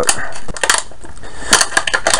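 Stiff clear-plastic blister pack crackling and clicking as it is gripped and squeezed in the hands, in clusters about half a second in and again near the end.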